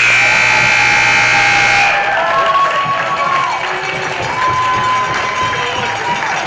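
Gym scoreboard buzzer sounding loudly for about two seconds and cutting off, marking the end of the wrestling bout. Then the crowd cheers and shouts.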